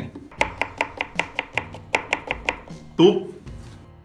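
Kitchen knife chopping a raw potato on a wooden chopping board: a quick, even run of chops, about five a second, that stops after about two and a half seconds.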